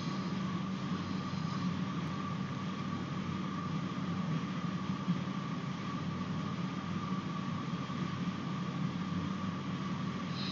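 Steady background hum and hiss with a thin, high, steady whine on top. It is the recording's noise floor, with no distinct events.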